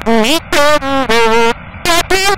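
A voice in about three drawn-out, wavering syllables, each about half a second long, with short gaps between them.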